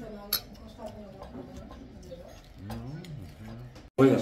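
Indistinct background conversation, with one sharp click of cutlery on a plate about a third of a second in.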